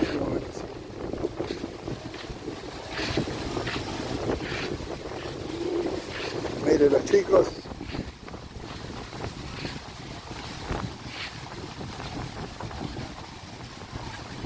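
Wind buffeting the microphone over outdoor street ambience, with a short burst of voices about seven seconds in.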